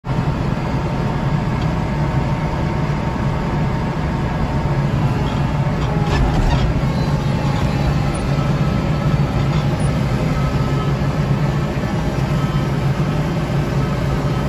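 Kubota tractor's diesel engine running steadily under load as its front-mounted snow blower throws wet slush, heard from inside the cab.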